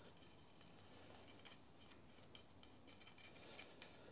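Near silence, with faint scattered light ticks and scrapes from a wooden stick dabbing two-part epoxy glue onto the tip of a graphite golf shaft.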